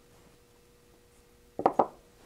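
Faint steady hum, then about a second and a half in, a quick cluster of two or three sharp clicks as the cast-aluminium attenuator housing is handled.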